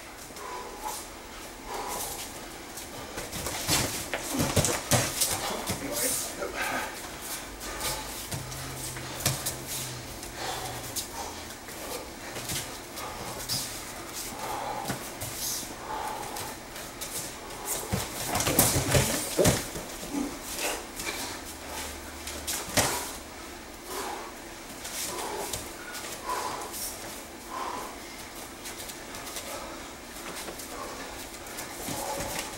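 Two grapplers wrestling on foam mats: bare feet scuffing and stamping, and hands and bodies slapping together, with short grunts and hard breathing between. There is a busier flurry of impacts past the middle.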